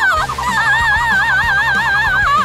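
A high, loud cry that warbles rapidly and evenly up and down in pitch, a cartoon-style scream.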